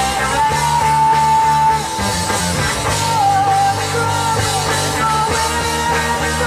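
Rock band playing live: a singer's melody with a long held note early on, over electric guitar and drums.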